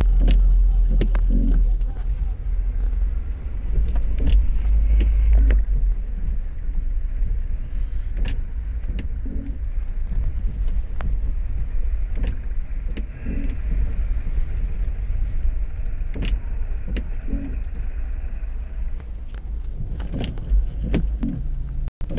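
Car cabin noise while driving slowly on a wet street: a steady low engine and road rumble with irregular clicks and rattles.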